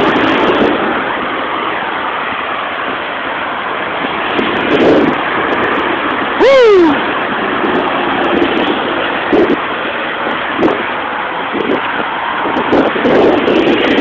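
Steady noise of road traffic and wind while riding a bicycle beside a busy road. About halfway through there is one loud, short sound that falls steeply in pitch.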